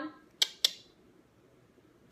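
Two short, sharp clicks about a quarter of a second apart, half a second in.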